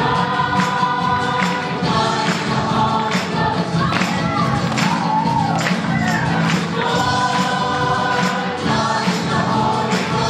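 Church choir singing a lively worship song over a steady percussion beat, with one voice gliding up and down in the middle.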